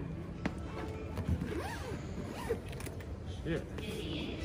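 Zipper on a hard-shell suitcase being pulled shut, with clicks and creaks from handling the case.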